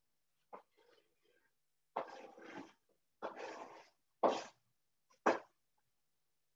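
Sliced mushrooms being added to a hot pot of sautéing onions and garlic and moved about: about five short noisy bursts, each starting suddenly, with the loudest two near the end.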